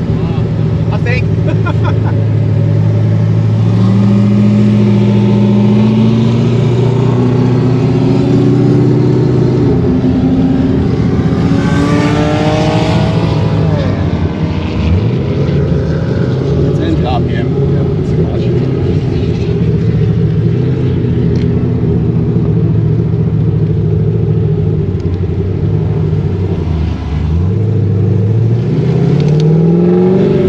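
Ford Falcon GT's 5.4-litre DOHC V8 being driven under light load. Its pitch climbs slowly over several seconds and then drops back. It runs steady for a while, with short dips as gears change, and rises again near the end.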